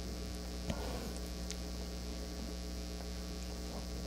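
Steady electrical mains hum, a low buzz in the audio chain, with one faint click a little under a second in.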